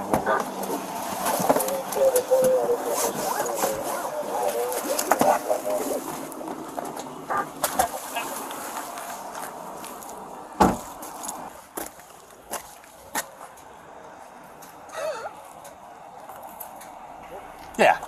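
Indistinct voices during the first few seconds, then scattered clicks and knocks, with one heavy thud about ten and a half seconds in.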